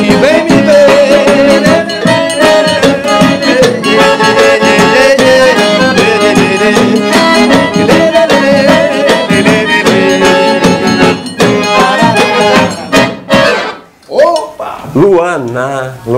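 Forró band playing an instrumental passage, the accordion leading the melody over acoustic guitar and a zabumba bass drum. The music stops about 13 seconds in and a man's voice follows.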